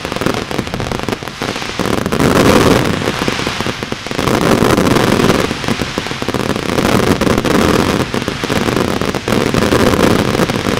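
Consumer fireworks firing a continuous, dense barrage of rapid crackling reports, with no break. It swells louder about two seconds in and again from about four seconds on.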